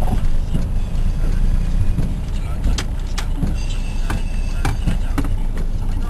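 Car engine and road rumble heard from inside the cabin while driving, a steady low drone, with a few sharp clicks scattered through it.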